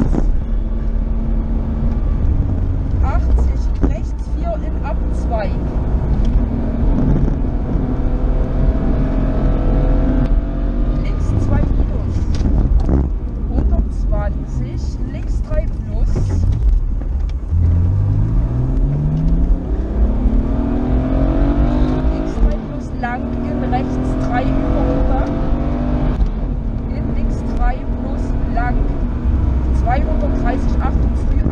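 BMW rally car's engine heard from inside the cabin at full stage pace, revs rising and falling with the bends, with one long climb in revs about two-thirds of the way through.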